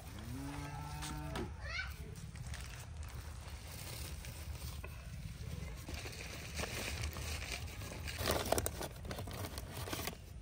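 A cow mooing once near the start, one low call about a second and a half long that rises at the end. Later, a burst of newspaper crackling as the paper-wrapped snacks are opened and handled, loudest a little after eight seconds in.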